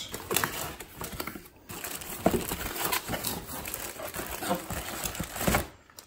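Plastic packaging crinkling and a cardboard box rustling as plastic-wrapped parts are handled and lifted out, in irregular rustles with a couple of louder knocks.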